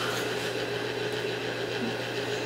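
Steady low hum of room noise, an even background drone with no distinct event.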